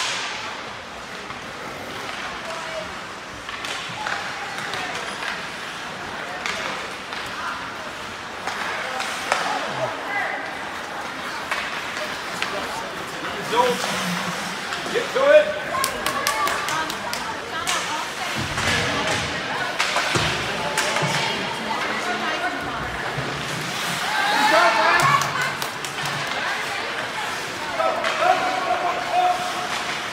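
Ice hockey rink from the stands: spectators' voices and shouts over the rink's echo, with clacks and knocks of sticks and puck, the loudest about fifteen seconds in.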